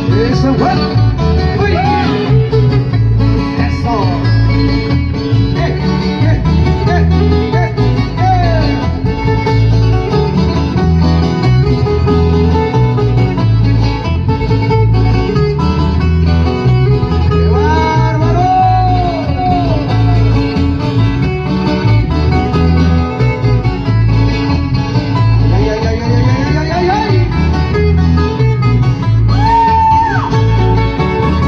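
Loud dance music from a band on stage, played through a large sound system, with a steady repeating bass beat and a melody line that slides up and down.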